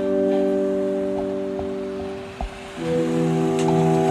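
Music: a held, steady organ-like keyboard chord with a few faint scattered clicks. About three seconds in it gives way to a new, fuller chord with a lower bass note.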